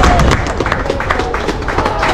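A group of women singers ends a carol on a held note just after the start, and an audience breaks into scattered applause and clapping.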